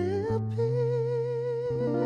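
A singer holding one long wordless note with vibrato, sliding up into it at the start, over chords strummed on an archtop hollow-body guitar; the chord changes about half a second in and again near the end.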